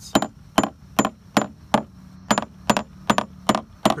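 A hammer tapping repeatedly on a 1985 Grady-White's fiberglass transom, about three sharp taps a second with a quick bounce. The taps sound solid, the sign of sound core with no voids or rot at this spot.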